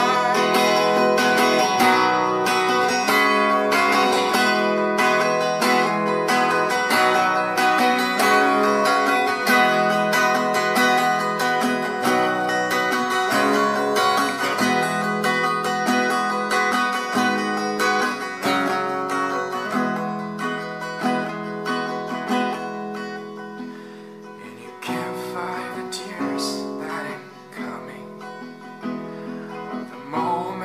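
Acoustic guitar, capoed, strummed steadily in a rhythmic pattern. It plays softer after about twenty seconds, dips lowest near the twenty-four-second mark, then picks up again.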